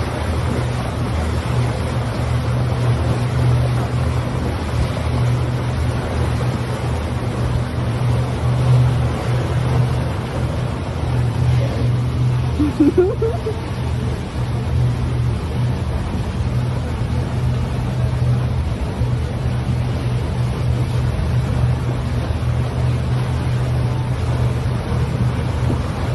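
A boat's engine running at a steady low hum, with water rushing past the hull and wind on the microphone.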